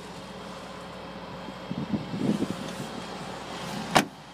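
Steady outdoor background noise with some handling rustle, then a single sharp thud near the end as the Subaru WRX's rear passenger door is shut.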